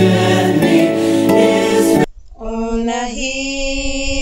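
Choral gospel music that cuts off abruptly about halfway through; after a brief gap, three women start singing a hymn unaccompanied.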